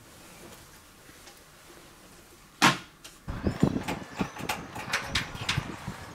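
A single loud thump a little past halfway, followed by a quick run of irregular knocks and clicks over a low rumble.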